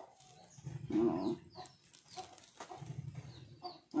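Chickens clucking faintly, with a few short high chirps about halfway through and near the end.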